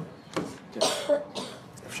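A man coughing and clearing his throat, two short bursts about half a second apart.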